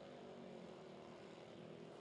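Faint, steady engine drone of two mini motorcycles racing through a corner.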